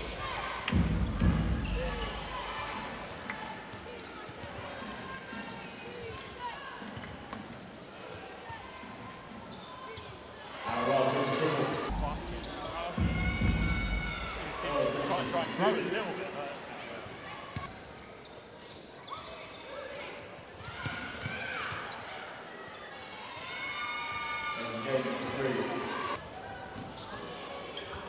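Basketball dribbled on a hardwood court in a large arena, the bouncing loudest near the start and again about halfway through.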